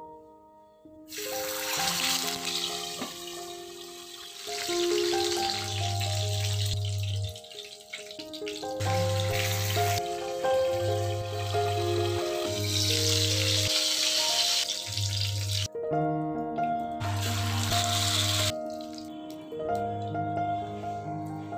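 Katla fish pieces sizzling as they fry in hot oil in a kadai, a dense hiss that starts about a second in and runs in long stretches, breaking off briefly near the end. Soft instrumental music plays throughout.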